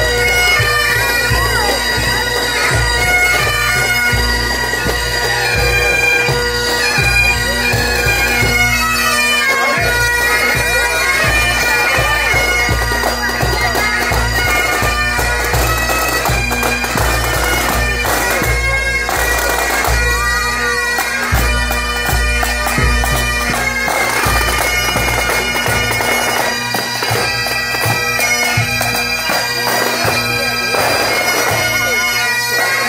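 Pipe band playing: massed Great Highland bagpipes, their steady drones under the chanter melody, with snare and bass drums beating beneath.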